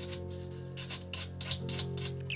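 Short hand-sanding strokes of a small sanding tool across the filler on a chipped guitar headstock corner: one brief stroke near the start, then about five quick strokes in the second half, over soft background music.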